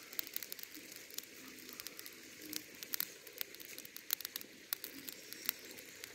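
Lump-charcoal embers in a grill crackling, with faint irregular pops and snaps.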